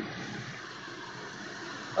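Steady rushing background noise coming through a remote caller's open microphone on a call line. It is even and hiss-like, with no distinct events.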